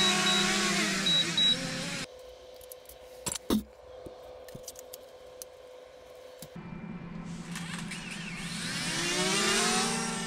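Small quadcopter drone's propellers whining, the pitch falling over the first two seconds as it is brought down by hand. After a quieter stretch with a couple of clicks, the whine builds again and bends in pitch near the end as the drone flies close.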